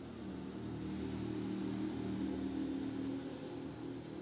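A quiet, steady low-pitched hum with faint background noise, easing slightly near the end.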